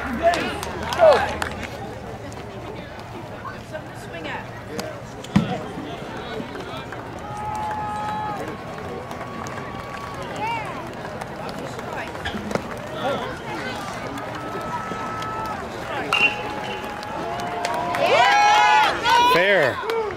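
Spectators' voices calling out at a baseball game, with a sharp knock about five seconds in. Near the end the shouting swells loud and overlapping as the batter puts the ball in play for a hit.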